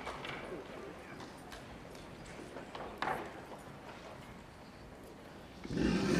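High-heeled shoes clicking on a stage floor as a woman walks, a few irregularly spaced steps with one louder click about three seconds in, while the applause before it dies away.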